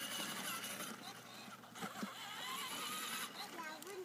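Small electric motor and gears of a battery-powered toy ride-on quad whining faintly as it rolls along a concrete sidewalk, its plastic wheels running on the pavement.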